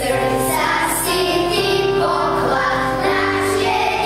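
A group of children singing together over a held instrumental accompaniment, the voices coming in at the start.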